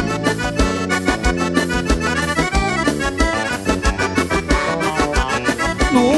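Live gaúcho dance band playing an instrumental passage between sung verses: an accordion carries the melody over a steady bass and drum beat.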